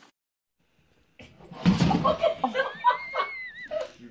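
People laughing, starting after a sudden loud thump about a second and a half in. The first second is silent. A thin high-pitched squeal runs through the laughter.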